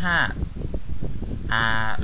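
A man's voice: a word trails off at the start, then after a short pause with low background noise he holds a long, drawn-out hesitation "aah" near the end.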